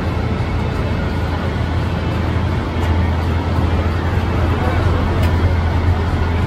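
Street noise carried by a steady low rumble like an idling vehicle engine, growing slightly louder about three seconds in, with faint voices mixed in.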